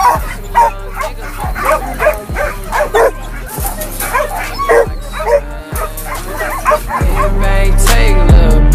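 Hog-hunting dog barking rapidly at a wire panel, two or three barks a second, over hip-hop music with a steady bass line that grows louder near the end.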